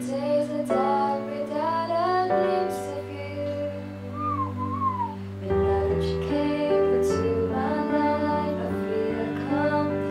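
Music: a backing track of held chords with a female voice carrying a wavering melody line into a handheld karaoke microphone.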